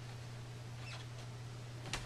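Quiet room with a steady low hum, and two faint, brief high squeaks, about a second in and near the end.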